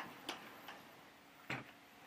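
Quiet room tone with a few faint, unevenly spaced clicks, the clearest about one and a half seconds in.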